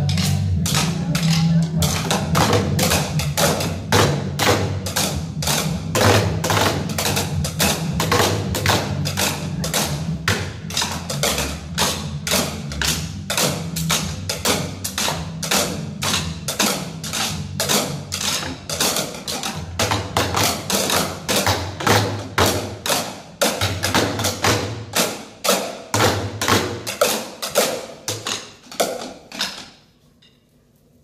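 A group of children drumming with wooden sticks on plastic chairs, playing a fast, steady beat of sharp knocks.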